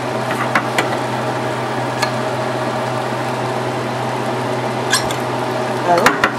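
Food frying in a stainless pan, a steady sizzle over a low constant hum, with a few light clicks and knocks from utensils.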